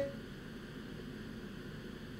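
Faint steady hiss with a low hum: the background noise of a video-call audio line in a pause between words.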